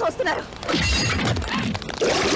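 A loud crash with a shattering sound about three-quarters of a second in, after a brief shout, in a film action soundtrack.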